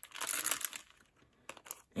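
Clear plastic bag of rubber loom bands crinkling as hands dig bands out of it. It is loudest in the first second, then dies down to a few light clicks.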